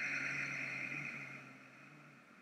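Ujjayi breath: one long, soft, audible exhale through a narrowed throat, a steady hiss with a faint hum under it, fading out after about a second and a half.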